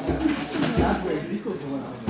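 Low murmuring voices, with a few dull thuds from fighters' feet and gloves during light-contact sparring on a padded mat.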